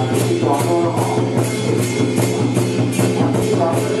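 Drum-led percussion music with a steady beat of strokes about two a second over a sustained ringing tone.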